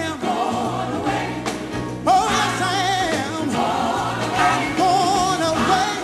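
Live gospel song: a lead vocalist sings long, drawn-out phrases with a wide vibrato over band accompaniment.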